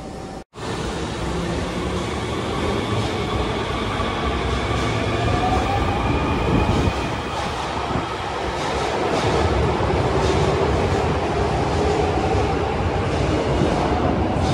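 Osaka Metro Sakaisuji Line 66-series subway train pulling out of an underground station and accelerating past. Its motor whine rises in pitch over a steady rumble of wheels on rail.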